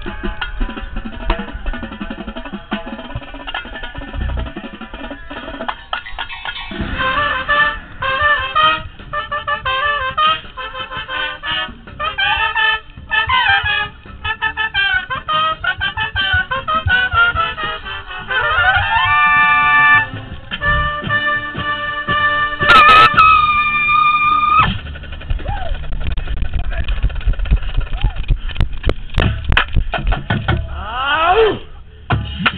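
A drum and bugle corps brass section and drumline playing together in fast, rhythmic passages. Near the middle there is a rising sweep, and then a loud held brass chord of about two seconds, the loudest point.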